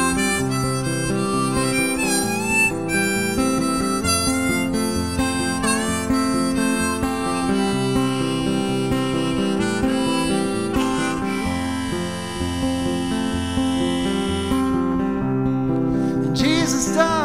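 Blues harmonica solo played from a neck rack over a bass line on an acoustic guitar, with bent notes early on. Later the harmonica holds one long chord, which stops shortly before the end.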